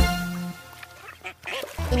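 Children's cartoon music that drops away about half a second in, with cartoon duck quacks.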